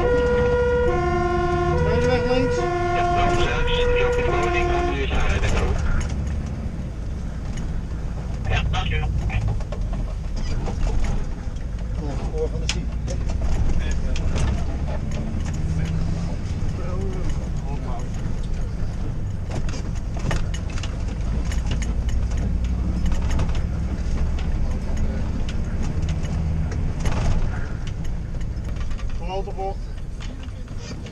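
Fire engine's two-tone siren alternating high and low, heard from inside the cab, cutting off about five seconds in. After that, the truck's engine runs with a low rumble in the cab as it drives, with scattered light clicks and knocks.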